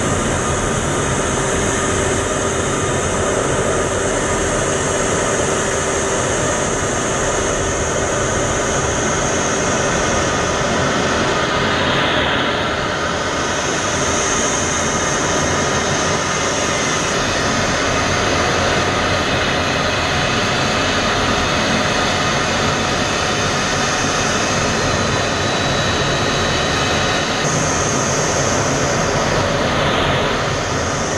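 Steady cockpit noise of an F-16 fighter jet in flight, heard inside the closed canopy: the jet engine and rushing air, with a few faint steady tones. The sound shifts a little about twelve seconds in and again near the end.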